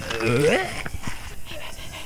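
Animated dog's vocal sound effects: a short voice-like sound rising in pitch about half a second in, followed by light panting.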